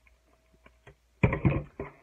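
Handling noise from a small mail-order package being opened with scissors: a few faint clicks, then a louder burst of rustling and knocks a little past a second in.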